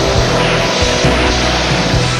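Rock music from a cartoon soundtrack, with a rushing aircraft-engine sound effect over it from about half a second to a second and a half in.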